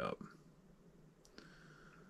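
Two faint clicks as a board-mounted potentiometer is turned up by hand. The second click is followed by a faint, steady, high-pitched ringing for about half a second: audible ringing from the boost regulator as the LED current rises.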